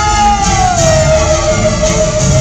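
Live stage musical number reaching its climax: one long held high note slides down in pitch a little under a second in and then holds steady over the band's accompaniment.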